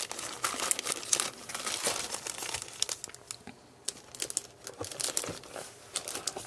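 Clear plastic card sleeves crinkling as the cards inside are handled and laid down: an irregular run of short crackles and rustles.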